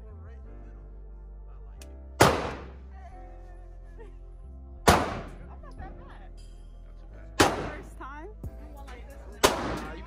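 Four handgun shots on an indoor firing range, each a sharp, loud crack with an echoing tail, two to three seconds apart, over background music.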